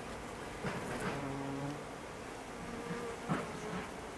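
A flying insect such as a bee, wasp or fly buzzing past, a steady low hum for under a second about a second in and briefly again near three seconds, with a few soft knocks.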